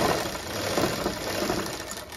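Motor-driven sewing machine running steadily, stitching a sleeve seam into a kameez.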